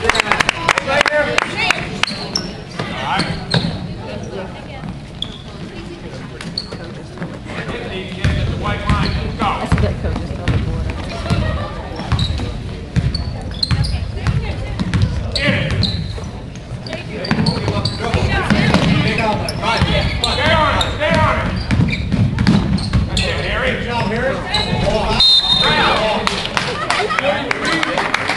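A basketball being dribbled and bouncing on a hardwood gym floor, with repeated short thuds, over a steady background of spectators' voices.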